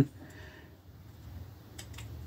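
Quiet room tone with a low steady hum, and one or two faint clicks near the end as the plastic model-kit sprue and side cutters are handled.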